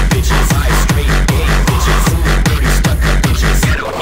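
Hardstyle dance track: a steady, heavy distorted kick drum with a reverse bassline between the beats, the low end dropping away just before the end.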